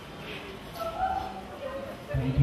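Faint, short high-pitched vocal cries from a person, three or four of them, each rising and falling in pitch.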